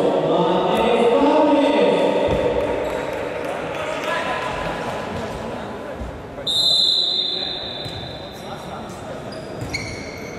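Voices calling out in a large echoing sports hall, then a referee's whistle gives one sharp blast lasting about a second, about six and a half seconds in, signalling the kick-off from the centre spot.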